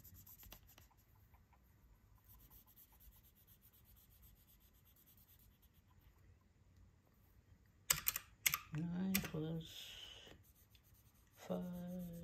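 Felt-tip marker colouring in squares on a savings tracker: faint scratching of the tip, then a quick cluster of sharp clicks about eight seconds in, followed by a brief murmur of voice.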